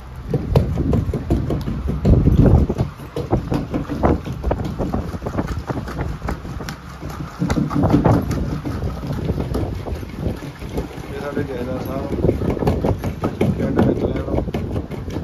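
Repeated dull thuds of a long wooden pestle pounding a coarse, grainy mixture in a clay mortar.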